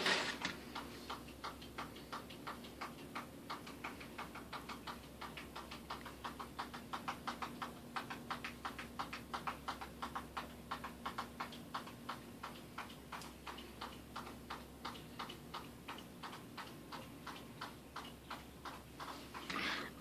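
Fast, regular ticking, several clicks a second, louder around the middle and fading again toward the end, over a faint steady hum.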